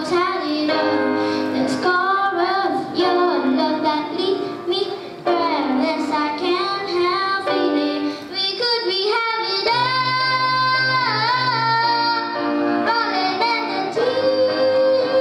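A boy singing into a microphone while accompanying himself on a grand piano. About ten seconds in he holds one long note that wavers in pitch.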